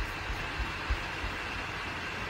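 Steady background hiss of room tone, with a few soft low thumps.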